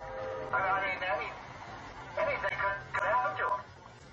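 A voice speaking in short phrases over a steady low hum.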